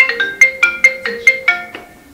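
Phone ringtone in a marimba-like sound: it starts suddenly with a quick run of about eight bright struck notes, and the phrase dies away near the end.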